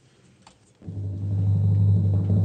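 A short near-silent gap with a faint click, then, just under a second in, a radio music cue fades in: a deep, steady low drum note that swells louder.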